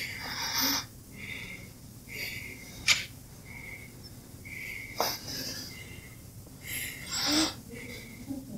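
A man breathing deeply and audibly in and out, as a patient does on request while a doctor listens to his chest with a stethoscope. The breaths come near the start and again near the end, with two sharp clicks between them.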